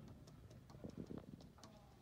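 Near silence with faint, irregular scratches and ticks of a pen drawing lines on paper.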